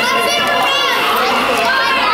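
Children shouting and chattering as they play, with several high voices overlapping and adults talking, in a large hall.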